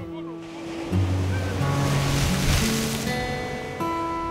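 Sea surf washing against a rocky shore, swelling to a peak and easing off, under background music of held, slowly changing notes.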